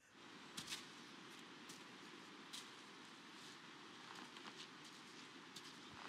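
Near silence: a faint even hiss with a few soft, scattered ticks.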